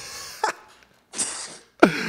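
A man's stifled, breathy laughter: puffs of air and a hiss of breath, with a short pause partway through, then a sudden louder laugh just before the end.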